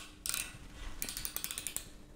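Small ratchet mechanism of a hand tool clicking: a few separate ticks, then a rapid run of about ten clicks lasting under a second, starting about halfway through.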